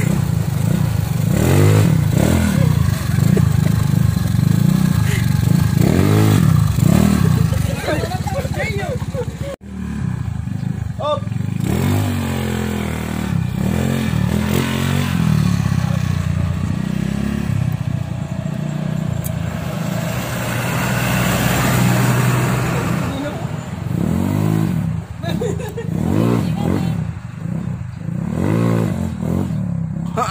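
Small motor scooter engine revving up and easing off as it is ridden past, its pitch rising and falling repeatedly.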